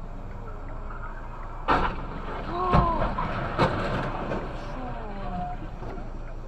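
Road crash of a red light box truck colliding and rolling onto its side: a sharp bang about two seconds in, then two louder bangs about a second apart with clatter between. Short vocal cries can be heard during and after the crash.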